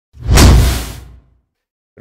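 Whoosh sound effect for a logo intro: a single swell with a deep low rumble that rises quickly and fades away over about a second.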